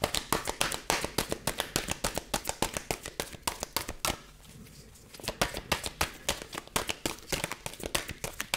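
A deck of oracle cards being shuffled by hand: quick runs of crisp card clicks and slaps, stopping for about a second near the middle and then starting again.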